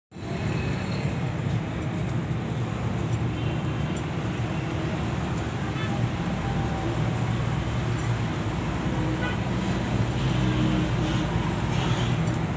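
Steady low background rumble with no clear single event in it.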